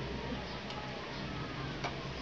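A metal spoon clicking lightly against a plate: two faint ticks, one about a third of the way in and a slightly louder one near the end.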